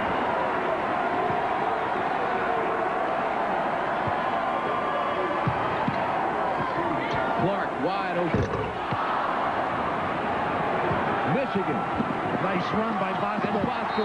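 Basketball arena crowd noise during live play: a steady din of many voices, with a few louder shouts and short sharp sounds from the court, including ball bounces, about midway and near the end.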